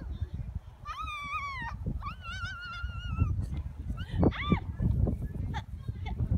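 A young child's high-pitched wordless calls: a wavering squeal about a second in, a longer drawn-out call after it, and a short rising-and-falling cry past the middle. Under them is a steady low rumble of wind on the microphone.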